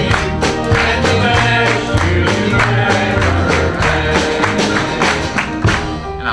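Church band and congregation singing a birthday song in E flat, with guitar, bass notes and a steady tambourine beat; the percussion stops right at the end.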